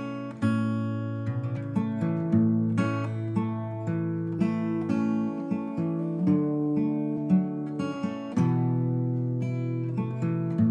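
Acoustic guitar strumming through a chord progression, the chords changing about once a second: the instrumental opening of a song, with no singing yet.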